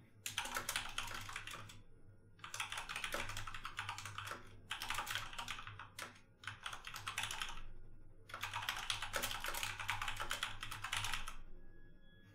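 Typing on a computer keyboard: fast runs of keystrokes in about five bursts of one to two seconds each, with brief pauses between them.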